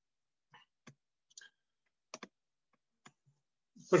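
Faint, irregular clicking at a computer, about six single clicks spread over a few seconds, two of them close together just past the two-second mark.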